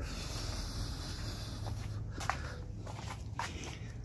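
Footsteps on concrete with a few faint clicks, over a steady low hum.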